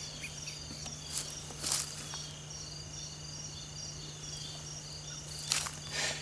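Insects chirping steadily in a high repeating pattern, over a low steady hum, with a few brief rustles about a second in and again near the end.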